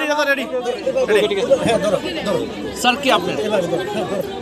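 A man speaking, with a crowd chattering around him.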